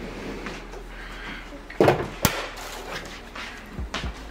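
Two sharp knocks about half a second apart, roughly two seconds in; the first is duller and the louder of the two. They are household impacts in a kitchen, over a low steady hum.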